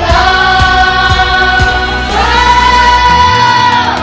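A group of children singing together over backing music, holding two long notes, the second higher than the first. A steady drum beat runs under the first note and drops away for the second.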